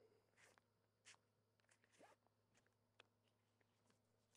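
Near silence, with a few faint rustles and ticks.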